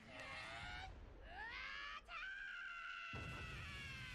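Faint anime voice screaming: a short cry, then a scream that rises in pitch and is held long, sagging slightly near the end.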